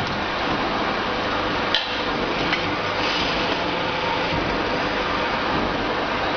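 Steady machine noise with a faint constant hum and one sharp click a little under two seconds in.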